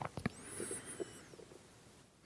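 A quiet pause in speech: a few soft clicks, then faint high squeaky glides lasting about half a second, over a low background.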